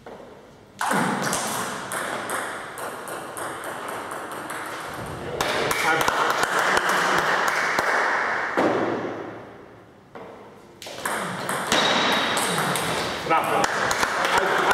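Celluloid or plastic table tennis ball ticking off bats and table in quick back-and-forth rallies, with a lull about ten seconds in before play resumes; voices can be heard as well.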